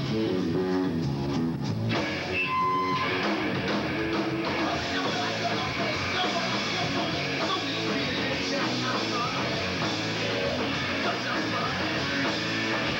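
Live rock band playing, with electric guitar to the fore over drums and bass.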